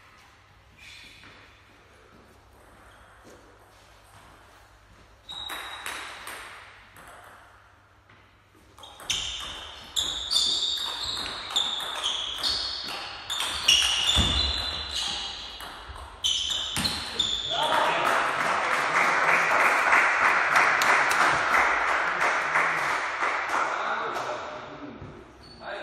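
Table tennis rally: the ball clicks back and forth between bats and table in quick succession for about eight seconds, with ringing pings. Then a stretch of dense applause follows the end of the point and is the loudest sound.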